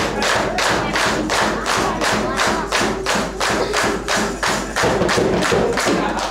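A dikir barat troupe clapping in unison, a fast even rhythm of about four claps a second that starts suddenly.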